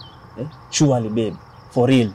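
A steady high-pitched insect trill with short falling chirps every half second or so, broken by three short bursts of a person's voice.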